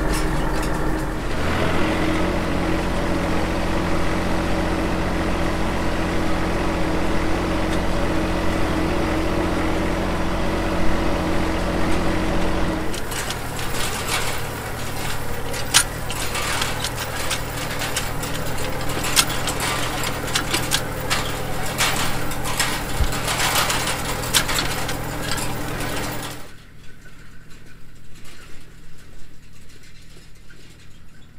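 Diesel engine of an RK37 compact tractor running steadily, heard up close, with a side-delivery hay rake working behind it. From about halfway through, sharp clicks and rattles from the rake's reel and teeth join the engine. Near the end the sound drops to a fainter tractor working out in the field.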